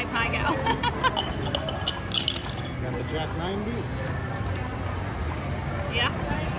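Casino chips clicking and clinking together several times in the first half, with a short clatter about two seconds in, over background voices and music.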